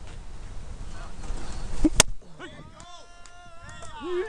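A single sharp crack of a pitched baseball striking at home plate about halfway through, followed by voices calling out in drawn-out shouts.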